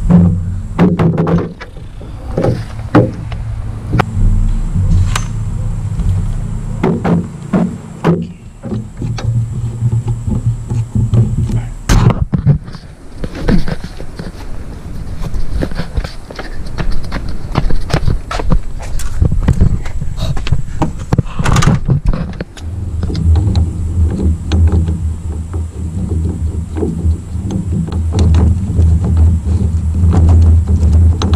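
Scattered knocks and clunks from a roof-rack crossbar and its clamp feet being handled and set onto a pickup's roof rails, with a low, uneven rumble underneath.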